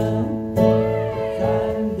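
Live music: an electric bass guitar playing low notes while a woman sings.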